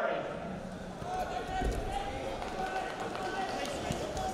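Indistinct voices in a large, mostly empty sports arena, with no clear words, and a low thump a little before the middle.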